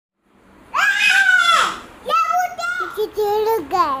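A young child's high-pitched voice: one long, steady high call about a second in, then shorter pitched cries and syllables.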